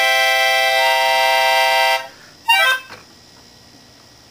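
A Melodihorn, a small keyboard free-reed wind instrument blown through a long tube, sounding a held chord with a reedy tone like an accordion. A note is added about a second in. The chord stops about two seconds in, and a short note follows before it goes quiet.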